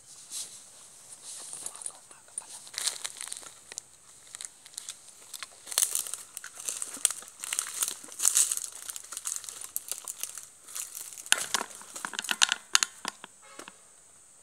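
Footsteps crunching and crackling through dry bamboo sticks and fallen leaves, in irregular bursts, with a run of sharper snaps near the end.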